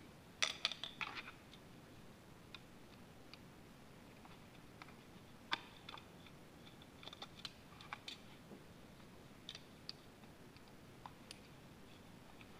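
Small metal clicks and taps of a screwdriver working the float bowl screws out of a slide-valve motorcycle carburetor: a quick run of clicks near the start, then scattered single clicks.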